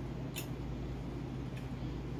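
Quiet room tone with a steady low hum, broken by a short faint click about a third of a second in and a fainter one near the end.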